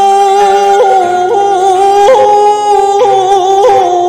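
Male shigin (Japanese classical poetry chanting) voice sung through a microphone, holding one long note with several quick upward flicks of vocal ornament along it.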